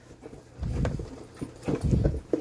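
Two short bouts of dull bumping and rustling as hands dig through shredded paper filler in a cardboard box and lift out a plastic capsule ball.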